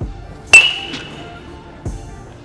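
A baseball bat hitting a ball off a batting tee: one sharp crack about half a second in, with a short ringing ping dying away after it.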